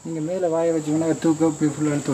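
A cricket trills steadily and high-pitched, with no break. Over it a man's voice holds drawn-out syllables at a fairly level pitch.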